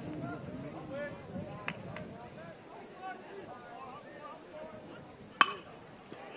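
Low chatter of the crowd in the stands, then about five and a half seconds in a single sharp crack of a baseball bat hitting a pitched ball. The ball is hit off-centre, not clean off the bat, and it loops into a shallow fly.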